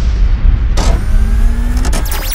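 Sound effects of an animated logo intro: a loud, deep explosion-like rumble, with a sharp hit a little under a second in, followed by a few faint rising tones.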